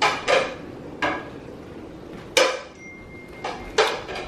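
Dishes and serving utensils clinking: a handful of short, sharp clinks and knocks spread unevenly over a few seconds.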